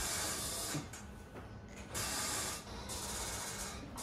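Electric hospital bed's adjustment motor running in three short bursts as its control buttons are pressed, about a second apart.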